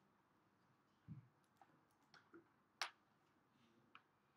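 Near silence: room tone broken by a few faint, scattered clicks and a soft low thump about a second in.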